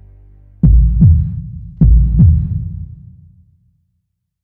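Deep heartbeat sound effect: two double thumps, lub-dub, lub-dub, about a second apart, dying away to silence. A low music bed fades out just before the first beat.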